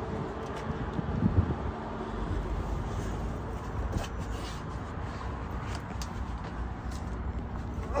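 A steady low rumble and hum with a faint constant tone, broken by a few light clicks and knocks of handling.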